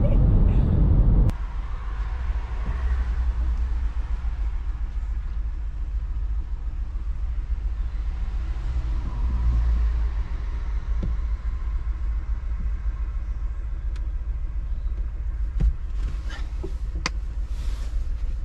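Car cabin road noise at motorway speed, a loud low rumble, cuts off about a second in. It is followed by a quieter, steady low rumble around the parked car, with a few short clicks and knocks near the end.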